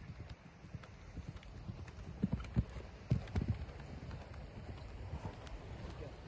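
Horse's hooves thudding on a loose arena surface at a canter, a dull uneven beat that is loudest between about two and three and a half seconds in.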